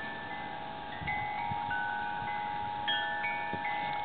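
Chimes ringing in the background: several clear, sustained tones of different pitches, with new notes starting every second or so and overlapping, and a few faint knocks.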